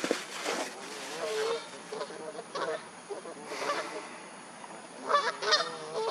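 Waterfowl calling: a drawn-out call about a second and a half in, then a quick run of short calls near the end.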